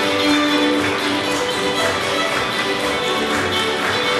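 Fiddle orchestra playing a reel: a lead fiddle over an ensemble of fiddles, guitars, cello, upright bass and piano, with a steady beat of taps running under the tune.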